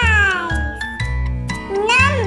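A cat meowing twice over background music with steady notes and bass: one long meow falling in pitch at the start, and a shorter one rising then falling near the end.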